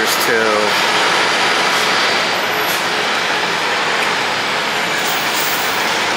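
NJ Transit coach bus running as it pulls across the terminal lot toward a gate: a loud, steady wash of engine and road noise.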